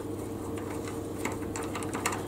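Faint light clicks and handling noise as a walnut bottle-stopper blank is screwed by hand onto the threaded stud of a wooden lathe arbour, over a steady low hum. The clicks come mostly in the second half.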